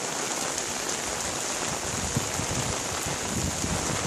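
Steady rain falling on a tiled courtyard, an even hiss, with some soft low thumps in the second half.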